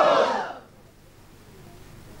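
A man's voice through a microphone ending a loud, drawn-out phrase in the first half-second, then a pause with only faint room noise.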